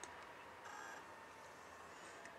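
Faint single short beep from a desktop PC's power-on self-test (POST), about two-thirds of a second in. A lone short POST beep signals that the start-up checks passed and the machine is booting normally. A faint click comes right at the start.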